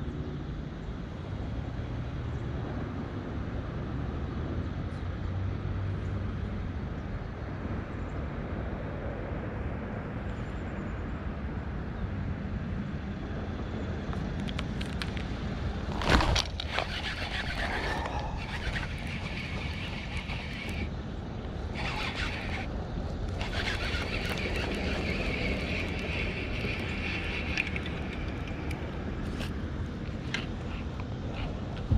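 Steady low rumble of wind on the microphone. About halfway through, a sharp knock, then some ten seconds of whirring and ticking from a baitcasting reel being handled and cranked.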